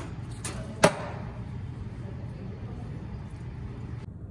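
Stainless steel milk pitcher of steamed milk knocked against a hard surface: a light knock, then a sharp, loud one about a second in, over the espresso machine's steady low hum.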